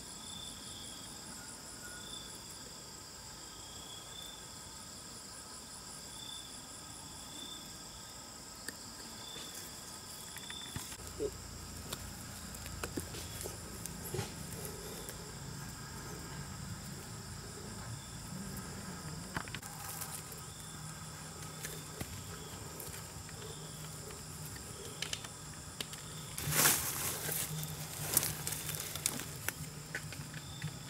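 Steady high chorus of crickets and other insects, with one call pulsing about once a second. Over it, small clicks and rustles of sticks and twine being handled, with a louder burst of rustling near the end.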